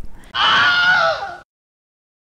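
A shrill, high-pitched scream, the gag voice of a screaming cartoon worm, lasting about a second and stopping abruptly.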